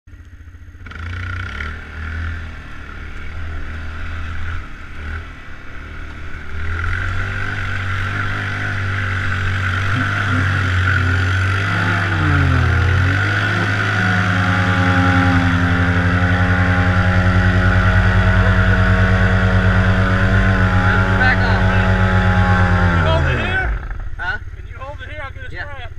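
ATV engine running under throttle, its pitch rising and falling, then held at high revs for about nine seconds before winding down sharply just before the end.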